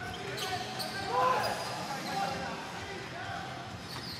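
Basketball court sound without crowd noise: a basketball bouncing on the hardwood during live play, with faint players' voices calling out.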